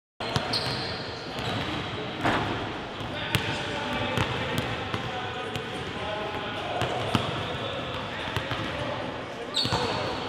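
Basketball bouncing on a hardwood gym floor in irregular thuds, with indistinct voices in the gym.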